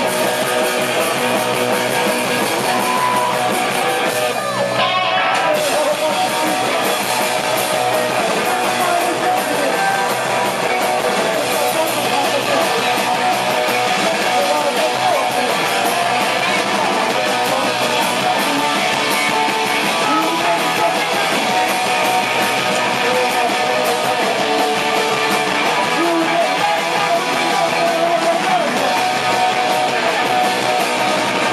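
Live rock band playing a song with loud strummed electric guitars, steady and unbroken.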